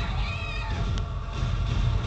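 Trailer soundtrack: a low rumbling drone, with a short, high, wavering cry-like sound in the first half second and a sharp click about a second in.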